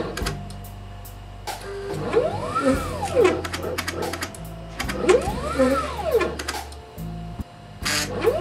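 Stepper motors of a homemade CNC pick-and-place machine driving its gantry back and forth. Twice, a whine rises in pitch and falls again over about a second as the axis speeds up and slows to a stop. Short clicks fall between the moves, over a steady low hum.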